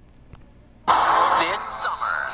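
Quiet hiss, then about a second in a TV promo's soundtrack cuts in loudly: a rushing whoosh with music and sweeping tones.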